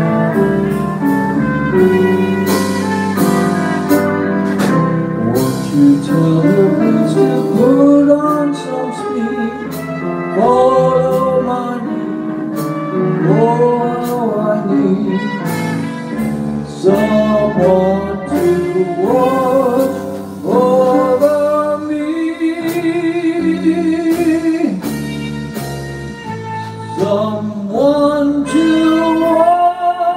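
Live small jazz band playing: a trumpet carries the melody, often sliding up into its notes, over grand piano, electric bass and drums.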